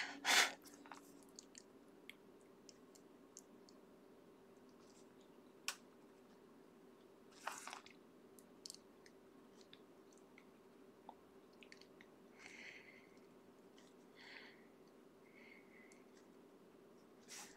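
Faint scratching of a wax-based colored pencil (Prismacolor Premier) worked over paper in short strokes, with scattered small clicks. The strokes come as soft patches near the end. A steady low hum runs underneath.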